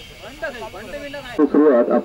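Speech only: faint background voices over a steady hiss, then a man speaking loudly into a handheld microphone, starting suddenly about two-thirds of the way in.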